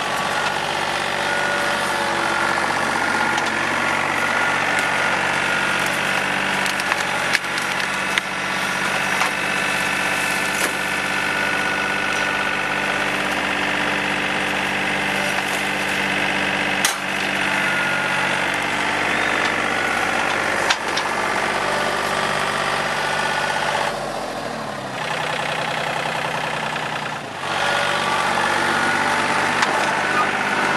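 TYM T413 sub-compact tractor's diesel engine running steadily while the grapple loader works, with a few sharp knocks. Near the end the revs drop for about three seconds, then pick back up.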